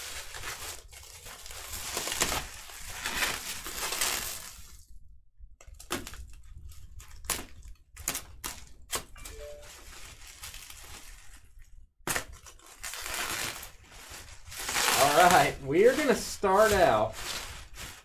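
Plastic bubble wrap being crinkled and pulled apart by hand, in several rustling stretches with a run of sharp clicks in the middle. A brief, indistinct voice is heard near the end.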